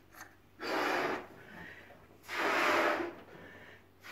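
A person blowing up a rubber balloon by mouth: two long puffs of air blown into it, the second about a second and a half after the first, with a quieter breath between.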